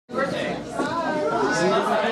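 Speech only: voices talking and chattering in a room.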